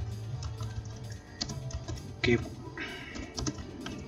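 Computer keyboard typing, a run of irregularly spaced keystrokes.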